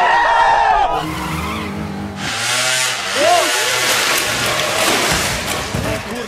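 A crowd yelling, cut off about a second in. Then a motorcycle engine runs low and steady for about a second, followed by a noisier stretch of a motor scooter with tyres skidding.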